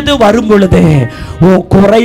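A man's amplified voice in long, drawn-out, sing-song phrases, with music beneath it.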